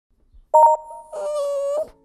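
Short intro sound sting: a bright two-tone ding about half a second in, then a held, slightly wavering pitched call that stops just before two seconds.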